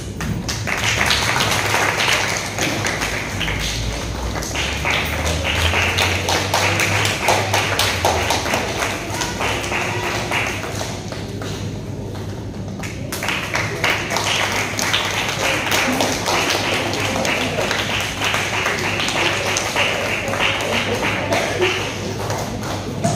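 Audience applauding, a dense run of clapping that dips briefly around the middle and picks up again.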